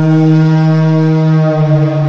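A single sustained synthesizer note, low and rich in overtones, held steady and starting to fade near the end: the opening of a new track in an electronic dance music mix.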